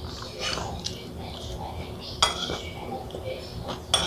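Metal spoon scraping and clinking against a ceramic plate during a meal. Two sharp, ringing clinks stand out, about two seconds in and near the end, with quieter scrapes and chewing close to the microphone.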